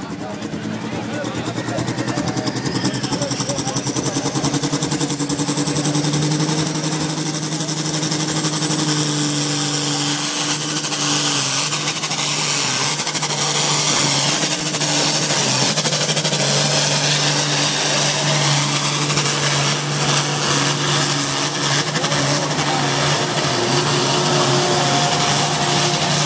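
Diesel engine of a pulling tractor running flat out under load as it drags a weight sled, getting louder over the first several seconds and then holding steady. About nine seconds in, a high whistle typical of a turbocharger rises and stays on.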